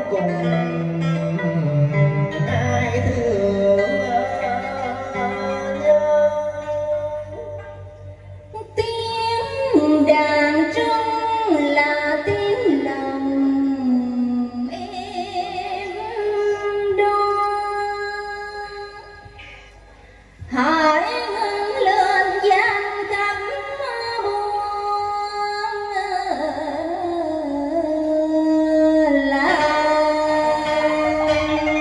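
A woman singing a Vietnamese tân cổ song through a handheld microphone over amplified backing music, with two brief lulls, the second ending abruptly.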